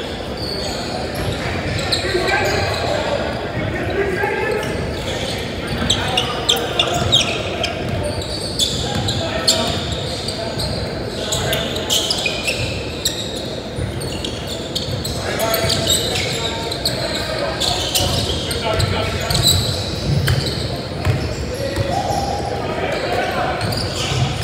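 Basketball game in a large, echoing gym: a ball bouncing on the hardwood court, with a steady stream of sharp knocks and players' voices calling out across the hall.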